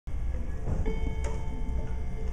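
A soft held musical note comes in a little under a second in, over a low rumble of room noise, with a single short click shortly after.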